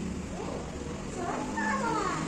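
A cat meowing: a drawn-out call that rises and falls in pitch in the second half.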